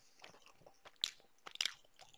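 Quiet wet mouth noises close to a headset microphone: lip smacks and tongue clicks, with a sharp click about a second in and another half a second later.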